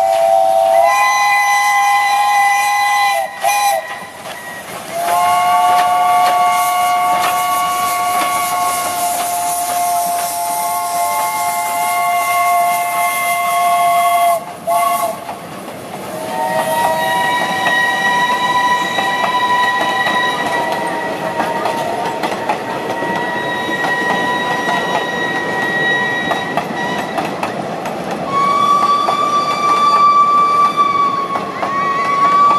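Steam whistles of two Pacific steam locomotives, 824 and 850, double-heading a passenger train, sounded in a series of long blasts, each a chord of several tones, the longest lasting about nine seconds. Underneath, the coaches run past with a steady clatter of wheels on the rails.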